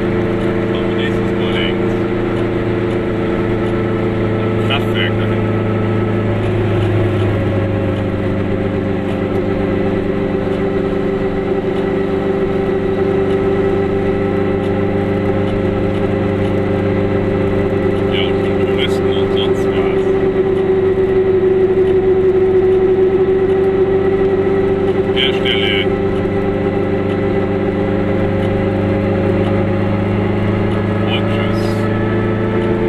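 Car engine and road noise heard from inside the cabin while driving, a steady drone whose pitch shifts about six to seven seconds in.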